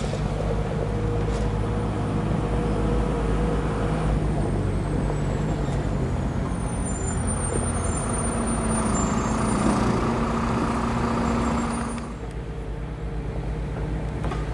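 A motor vehicle's engine running steadily with a low hum. The sound drops abruptly about twelve seconds in.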